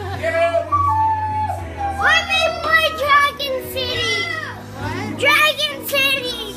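Children's high voices shouting and singing over music playing in the room.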